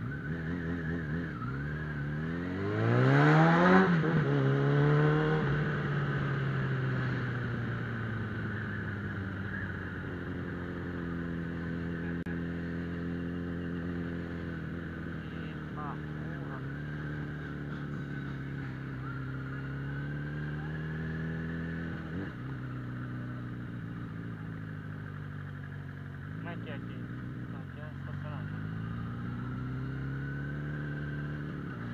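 Suzuki Bandit 650N inline-four motorcycle engine heard from on board, revving up hard with a steeply rising pitch about three seconds in, then running steadily with gentler rises and drops in engine speed as the rider rides on.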